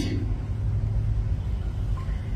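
A steady low rumble of background noise, with no clear events in it.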